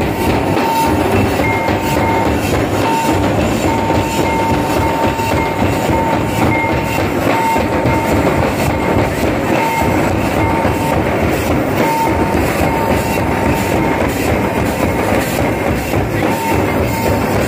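Dense, loud din of live dance drumming and a crowd, with an even beat and a thin high note that comes and goes in short dashes on top.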